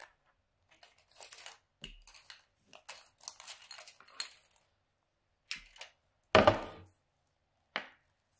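Felt-tip markers and craft materials being handled on a tabletop: scattered light clicks, rustles and scrapes, with a louder knock about six and a half seconds in and a shorter one near the end.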